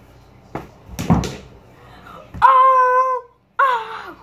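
A couple of short thumps about a second in, then a boy's long, high-pitched wordless cry held on one note, followed by a shorter falling cry near the end.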